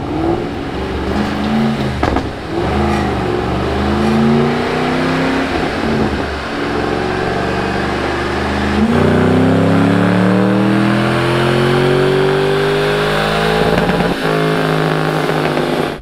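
Ford Mustang GT California Special's 4.6-litre V8 on a chassis dyno doing a power run. Its pitch rises and drops several times, then climbs steadily in one long pull for about five seconds. About two seconds before the end it lets off and falls to a lower steady note.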